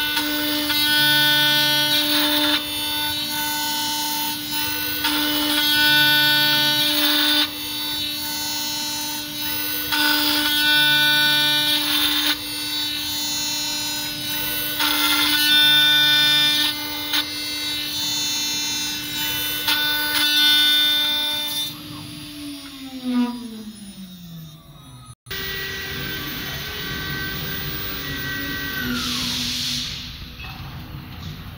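CNC router spindle running at a steady pitch while its end mill cuts through a metal plate. The cutting noise swells and eases in a regular cycle of about five seconds. About 22 seconds in, the spindle winds down with a falling whine.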